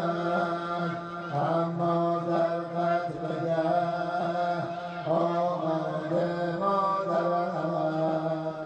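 Muharram mourning chant (noha) sung with long held notes and a wavering, ornamented melody.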